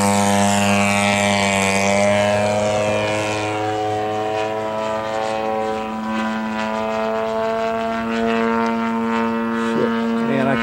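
The 85cc two-stroke gas engine and propeller of a large radio-controlled Hangar 9 Sukhoi aerobatic plane, running steadily as the plane lifts off and climbs away: a loud, even-pitched drone whose sharper edge fades after about three seconds as the plane moves off.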